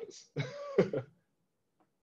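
A spoken word ends, then a person makes a short non-word vocal sound lasting under a second, such as a throat clear.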